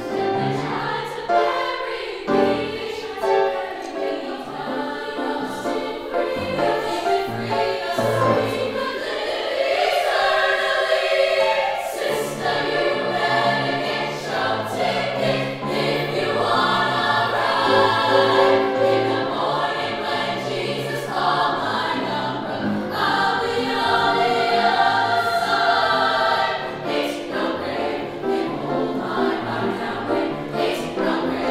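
A women's choir singing a gospel-style song with grand piano accompaniment, the sound filling out fuller in the low range about a third of the way through.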